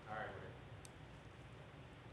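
Dead air on a dropped phone line: faint hiss, a brief faint voice at the very start, and a soft click a little under a second in.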